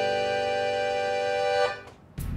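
Accordion and acoustic guitar holding the final chord of a folk song, a steady sustained chord that cuts off near the end and briefly rings away.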